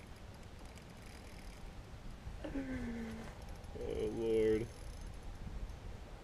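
Two short wordless vocal sounds from a man, about a second apart: the first low and falling in pitch, the second higher and louder. A low steady rumble of wind or water noise lies underneath.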